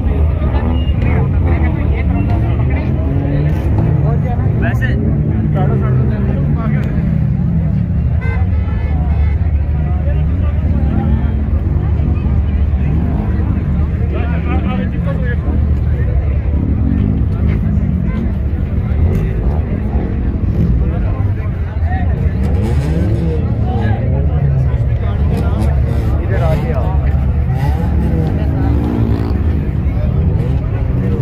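Chatter of many voices in a crowd, none standing out, over a steady low rumble.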